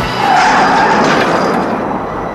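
Car tyres screeching in a hard skid as a large sedan swerves. The screech starts about a third of a second in and fades near the end.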